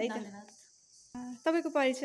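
A woman's voice trails off in the first half-second, and after a short pause brief spoken sounds return near the end. A steady high-pitched hiss runs underneath throughout.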